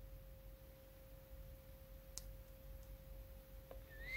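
Near silence: a faint steady hum with a couple of faint ticks.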